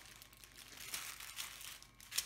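Faint crinkling of small clear plastic bags of diamond-painting drills as they are handled and set down.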